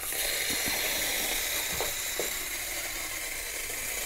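Aerosol can of Président whipped cream spraying a steady hiss as the cream is piped onto a trifle.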